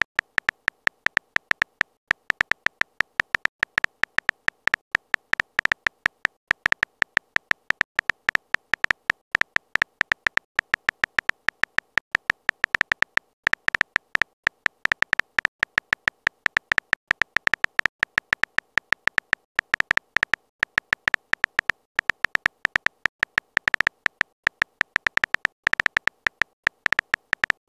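Keyboard typing sound effect from a texting-story app: a rapid run of short, identical high clicks, one per letter as a message is typed, with brief pauses every few seconds.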